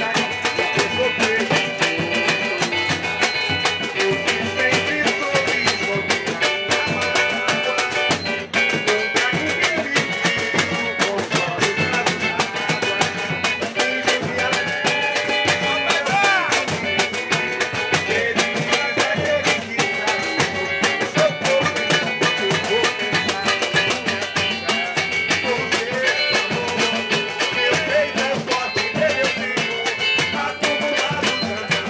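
Live samba batucada: surdos and other drums struck by hand and stick in a steady, driving rhythm, with a pandeiro and a strummed cavaquinho over it.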